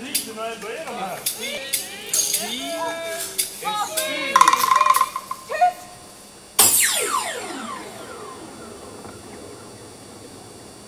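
Several actors' voices calling out wordlessly and a brief high held cry. About six and a half seconds in comes a sudden loud crash whose pitch falls away as it fades over about three seconds.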